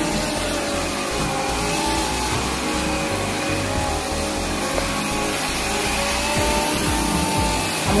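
Bissell AirRam cordless stick vacuum running steadily as it is pushed across carpet.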